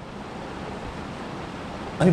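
Steady background hiss of room noise, with no voice.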